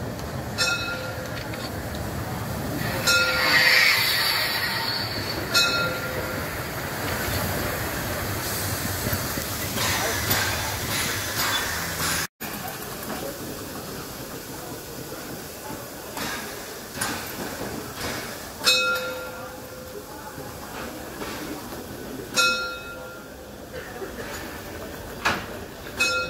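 Narrow-gauge steam train of the Molli railway running along street track close by, the locomotive and red coaches rolling past with a short bell-like ring repeated every few seconds. About halfway the sound cuts abruptly to the coaches standing, and the same ringing comes twice more near the end.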